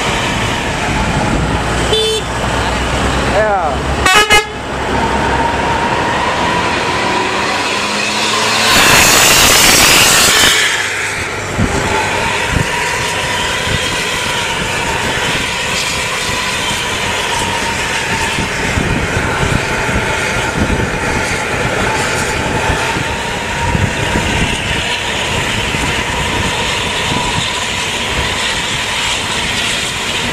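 Heavy road traffic with large intercity buses running close by, engine noise under a steady high whine. A horn toots briefly about three to four seconds in, and a loud hiss lasting about two seconds comes about nine seconds in.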